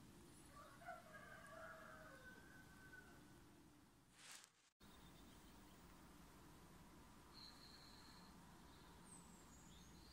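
Near silence: faint background ambience, with a faint drawn-out wavering call about a second in and a few faint high chirps near the end.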